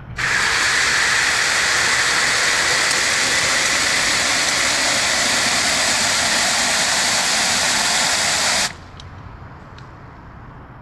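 Garden hose trigger nozzle spraying water into a metal bucket to fill a car-wash bucket: a steady, loud hiss that starts sharply and cuts off suddenly after about eight and a half seconds.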